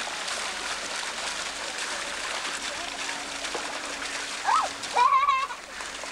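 Water splashing steadily from a fountain jet into a penguin pool. Near the end come a short gliding call and then a louder, wavering high-pitched call lasting about half a second.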